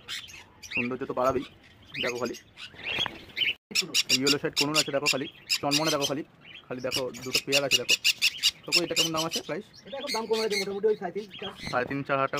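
Caged pet parrots, cockatiels and conures, calling and squawking over and over in repeated bursts with short gaps between them.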